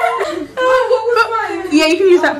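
Women's voices talking, with light chuckling.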